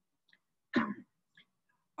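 A man clearing his throat once, briefly, about three quarters of a second in, during a pause in his talk.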